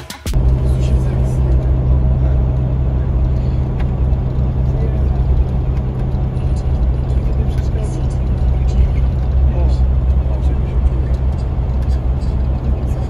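A vehicle engine running with a steady low drone, with indistinct voices of people talking over it.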